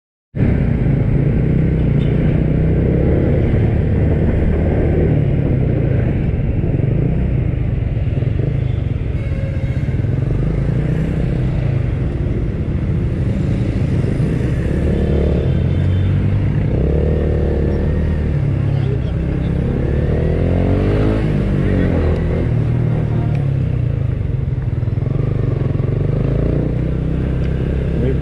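Motor scooter engine running steadily at low speed with road and wind noise, heard from the rider's position as it moves through slow town traffic, other motorcycles running nearby.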